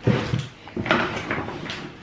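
Rustling and crinkling of a plastic shopping bag being rummaged through for groceries, with a few sharp knocks of packages being handled.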